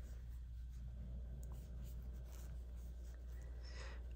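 Faint rustling and scratching of an aluminium crochet hook drawing wool yarn through stitches, over a steady low hum.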